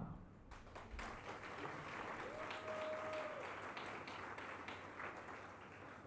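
Faint audience applause, many hands clapping, building about a second in and dying away near the end.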